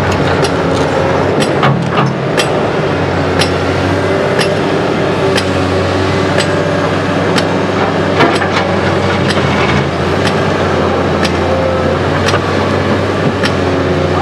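Cat 321 tracked excavator's diesel engine running steadily under hydraulic load as the arm swings and the bucket digs and dumps soil. Sharp clinks and knocks come at irregular intervals, roughly one or two a second.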